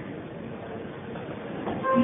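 Room noise from a live hall, then a band comes in near the end with steady held notes.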